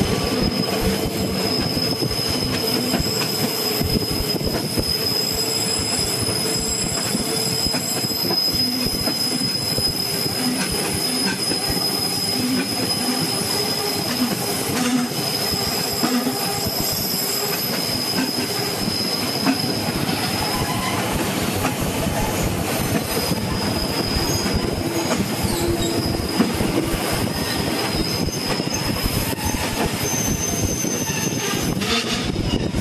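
Rhaetian Railway Bernina line train running through tight curves, its wheels squealing in a steady high tone over the continuous running noise of the cars on the track. The squeal drops out for a moment about three-quarters of the way through, then returns.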